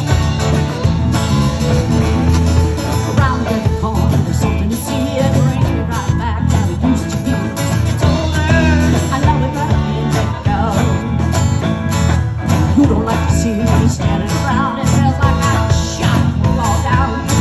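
Live band playing a country song: drum kit, fiddle and strummed acoustic guitar, with a woman singing lead for most of it.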